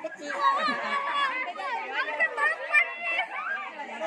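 Several children's voices talking and calling over one another, a steady overlapping chatter with no single clear speaker.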